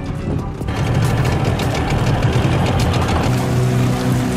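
Background music over a small motor dinghy under way, water rushing and splashing along its hull; the water noise grows louder about a second in.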